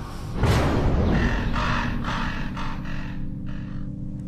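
Dramatic film score: a low sustained drone, struck by a sudden loud hit about half a second in, then a series of short accented bursts over the held tone.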